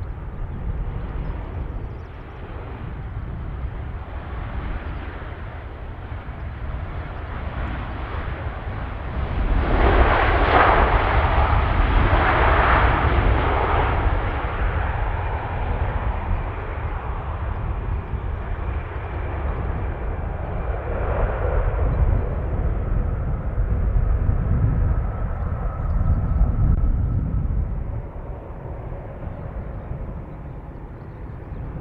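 Boeing 787-9 jet engines heard from the ground as the airliner lands and rolls out: a steady rushing roar that swells sharply about ten seconds in, stays strongest for a few seconds and then eases. A faint steady whine sits over it in the later part.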